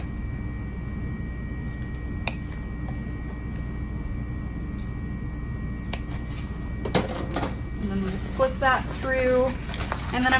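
A steady low hum with a few faint, short clicks as fabric is handled, then a woman begins speaking near the end.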